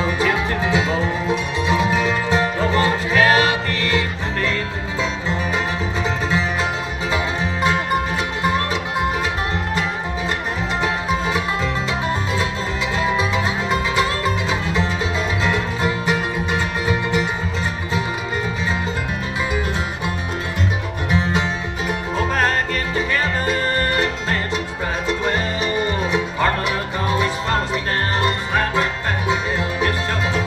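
Live acoustic bluegrass band playing a song, with banjo and guitar prominent over a mandolin, dobro and upright bass.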